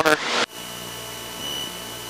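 Steady drone of a Cessna 162 Skycatcher's engine and propeller in a climb, with power being set to about 2400–2500 rpm, heard muffled through the cockpit intercom. A thin, steady high whine sits over it. It takes over when a man's words stop about half a second in.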